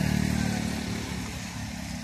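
A motor vehicle's engine passing on the street, a low hum loudest at the start and fading away over the two seconds.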